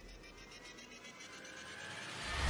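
A quiet lull: faint background hiss with no clear event, growing slightly louder near the end.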